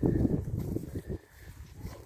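Footsteps of several people walking on a grass path, heard as irregular low thuds and rumble on a hand-held camera's microphone, loudest in the first second and then fading.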